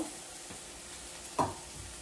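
Small pieces of chicken sizzling steadily in a cast iron skillet, a low even hiss, with one brief louder sound about a second and a half in.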